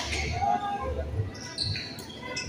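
Badminton players' shoes on an indoor court floor: footfalls and short high squeaks as they move during a rally, with a sharp racket strike on the shuttlecock right at the start.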